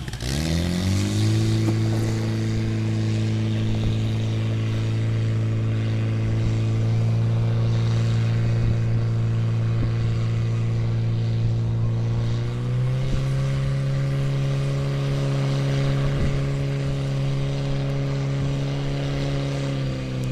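Portable fire pump engine revving up to high speed in the first second, then running steadily at full throttle as it drives water through the hoses to the nozzles. About 12 to 13 seconds in, its pitch steps up slightly and holds there.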